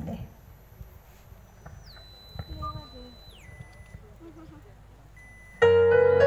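Low background murmur heard through a PA system, then, near the end, keyboard music starts abruptly and loud: the piano-like intro of the song's accompaniment.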